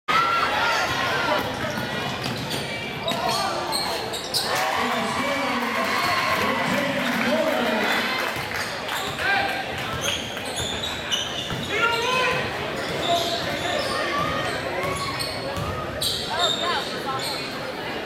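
A basketball bouncing on a hardwood gym floor during game play: a run of sharp strikes, with players' and spectators' voices and shouts throughout.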